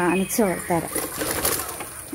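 A voice chanting in short sung syllables that stops about a second in, leaving a soft rustling hiss.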